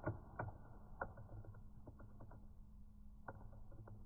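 Quiet room tone with a faint steady hum and a scattering of soft, irregular ticks.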